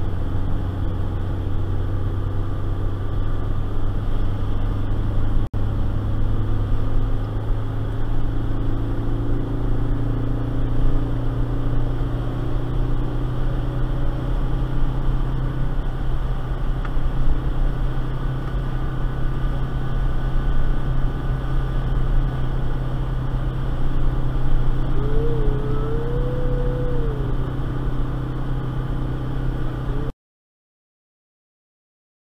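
Ford Festiva's stock 63 hp four-cylinder engine running steadily in gear while towing a trailer, heard from inside the small car's cabin as a low, even drone with road noise.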